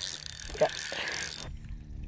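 Spinning fishing reel being cranked to retrieve line, its gears whirring and clicking steadily, then stopping about a second and a half in.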